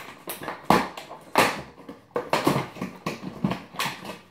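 Cardboard advent calendar box being handled and its door torn open: a run of irregular crinkling and tearing noises, the loudest about two-thirds of a second and a second and a half in.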